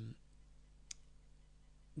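A single computer mouse click about a second in, over faint room hiss.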